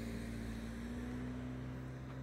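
Car engine running with a steady low hum.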